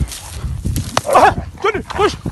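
A canid pinned down in a fight yelping in distress: three short, high, rising-and-falling cries in the second half, over scuffling noise.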